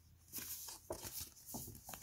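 Folded cardstock map being opened and handled: faint, scattered rustles and light clicks of stiff paper.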